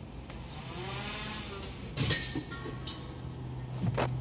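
Propellers of a large home-built multirotor drone whooshing as it spins up, growing over the first couple of seconds, then a sudden noisy burst about halfway through, followed by a faint thin motor whine.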